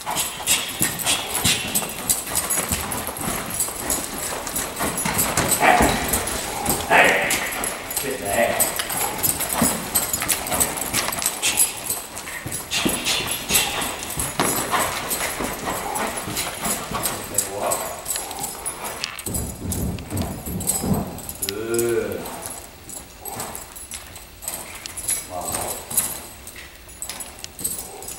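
A horse's hooves striking the arena's dirt footing as it moves around on a longe line, with a person's voice calling out now and then.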